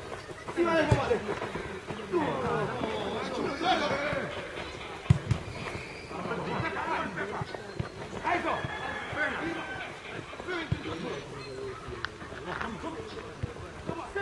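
Men's voices calling and shouting across a football pitch during play, with one sharp knock about five seconds in.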